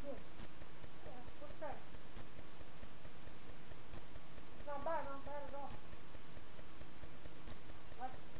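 A faint voice speaks a brief phrase about five seconds in, over a steady low hum, with a few soft clicks here and there.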